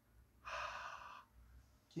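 One forceful exhaled breath, under a second long, huffed onto the clear polycarbonate lens of 3M safety glasses to test their anti-fog coating.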